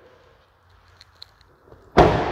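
Rear door of a Chevrolet Silverado 2500 crew cab pickup shut with a single solid slam at the very end, after a quiet stretch with a few faint clicks.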